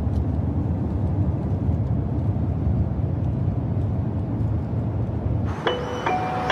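A car driving, a steady low rumble of engine and road noise. Near the end, music with chime-like notes comes in.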